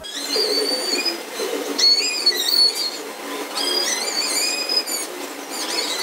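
Birds singing: repeated whistled phrases of several notes each, stepping and gliding in pitch, over a faint steady hiss.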